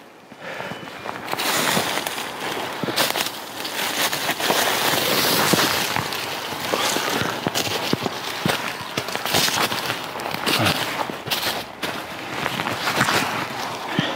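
Footsteps crunching through frost-covered heather and snow, with the brittle stems crackling and rustling against the legs in a dense run of sharp crackles.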